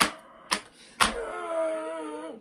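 Three sharp smacks about half a second apart, then a man's voice holding a long drawn-out note for about a second.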